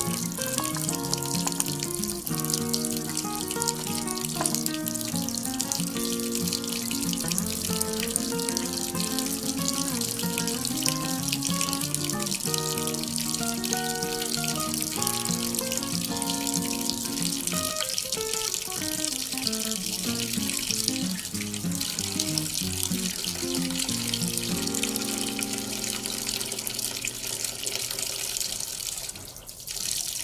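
A stream of water pouring steadily into a plastic basin of water, with background music playing over it; the music breaks off briefly near the end.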